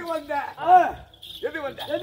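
A man's voice delivering stage dialogue in Tamil, with a short pause about a second in.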